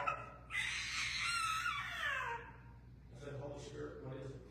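A high-pitched voice cries out in a drawn-out wail for about two seconds, sliding down in pitch at the end. A man's voice is heard briefly before and after it.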